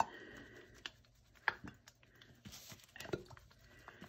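A plastic squeeze bottle of soap batter being shaken by hand to blend its colour, giving faint scattered clicks and knocks.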